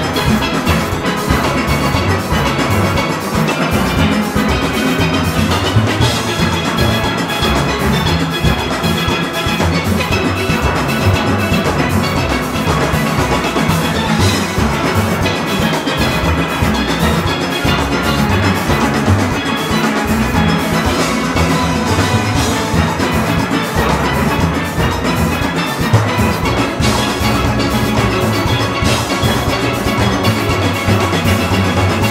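A large steel orchestra playing an up-tempo arrangement at full performance pace: many steel pans together in a dense, continuous sound, over a strong low line from bass pans struck with mallets.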